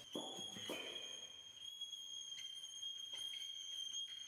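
Contemporary chamber ensemble music: one very high, steady held note, with a few soft short attacks sounding over it.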